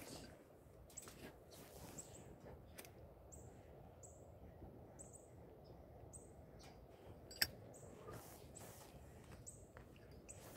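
Near silence with faint, short high chirps of a bird repeating about once a second, and a single sharp click about seven and a half seconds in.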